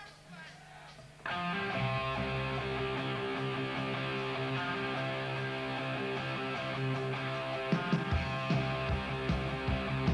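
Rock band starting a song live: about a second in, a loud electric-guitar chord is struck and held ringing, and drum hits come in near the end.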